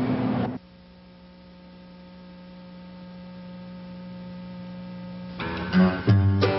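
Steady electrical hum, slowly growing louder, after the background noise cuts off about half a second in. Acoustic guitar music begins near the end.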